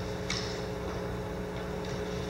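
A pause with a steady low hum, and a brief rustle of paper sheets being handled about a third of a second in, with a fainter one near the end.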